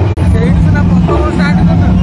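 Voices of people in a street crowd talking over a steady low rumble, with a brief dropout just after the start.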